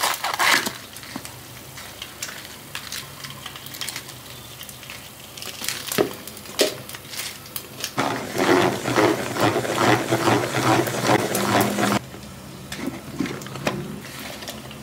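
A head of lettuce being cut and torn apart with a knife on a wooden board, with crisp crunching and knife knocks. About eight seconds in, a salad spinner is spun by hand for about four seconds, a fast ticking whir that stops suddenly.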